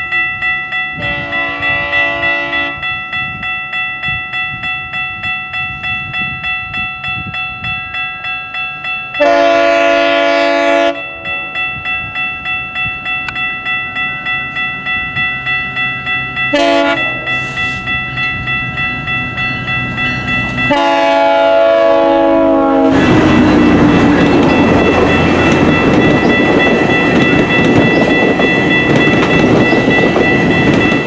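GO Transit bi-level commuter train sounding its horn for a level crossing in the long-long-short-long pattern, over a crossing bell ringing about twice a second. Shortly after the last blast the train passes close by with loud rolling wheel and rail noise.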